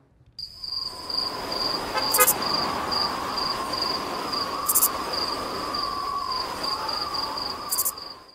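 Outdoor ambience of insects chirping in a steady pulsing rhythm, with a wavering mid-pitched tone underneath and three brief high chirps spaced a few seconds apart.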